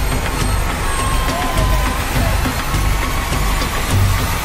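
Horror-trailer sound design: a heavy, steady low rumble under a dense wash of noise, with faint wavering tones above it.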